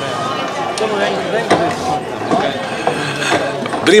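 Indistinct talking and chatter of several people, with a few short clicks; clear close-up speech begins right at the end.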